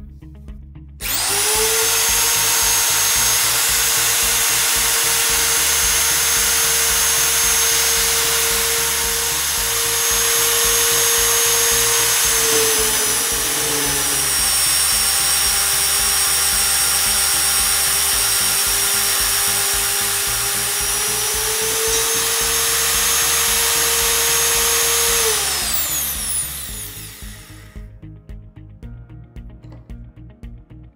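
Champion SB35 Smart Brute magnetic drill press motor starts about a second in and drives an annular cutter through steel plate on automatic feed. Its whine drops in pitch for several seconds midway while the cutter is deep in the cut, rises again, then winds down a few seconds before the end.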